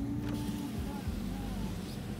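Power window motor running as a rear door's window glass lowers in its track, a steady hum.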